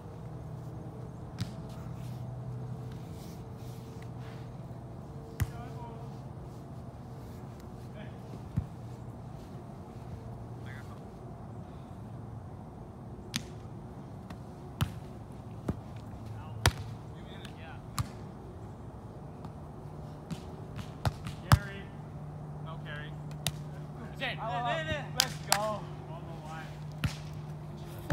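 A volleyball being struck by hands and forearms in a sand volleyball rally: scattered sharp smacks, the loudest about three quarters of the way through. Players shout briefly near the end, over a steady low hum.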